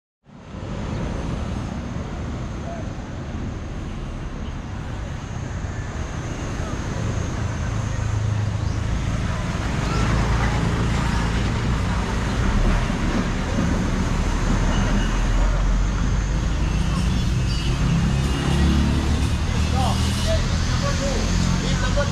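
Road traffic noise: a steady low rumble of passing vehicles, growing somewhat louder about eight to ten seconds in.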